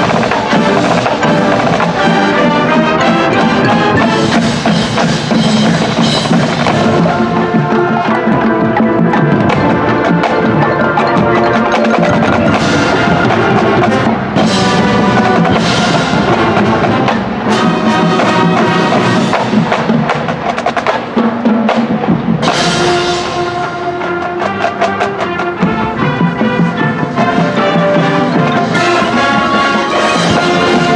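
High school marching band playing its field show: brass and woodwinds with drumline and front-ensemble percussion, punctuated by loud percussion accents.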